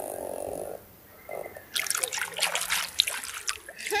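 A hand splashing and sloshing in open water, a quick run of splashes and drips starting about halfway through. A short hummed "mm-hmm" comes at the start.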